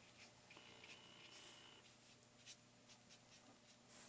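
Faint, soft brushing of a paintbrush stroking wet paint onto watercolour paper, with a few light ticks, close to silence.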